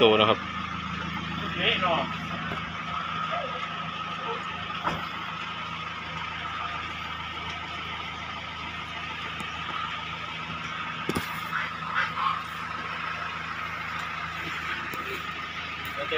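A vehicle engine, likely the delivery truck, idling steadily with a low, even hum.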